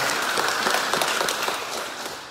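Audience applauding: a dense patter of many hands clapping, which starts to die away near the end.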